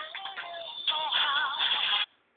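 A pop song playing, with a voice singing over the backing music and a wavering held note about halfway through; the music cuts off abruptly at the very end.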